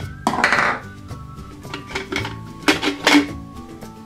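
Hollow plastic of a giant toy crayon container being handled as it is opened and a toy is taken out: a short rattling scrape about half a second in, then two light plastic clicks near the end, over soft background music.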